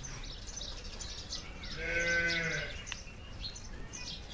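A farm animal calls once about two seconds in: one short, steady-pitched cry lasting under a second. Small birds chirp faintly in the background.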